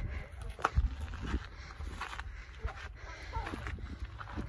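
Footsteps on a gravel and rock trail, a scatter of small irregular scuffs and taps, over a low rumble of wind on the microphone.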